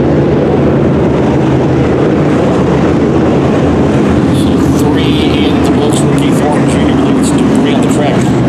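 A field of dirt late model race cars racing, their V8 engines blending into one loud, steady drone.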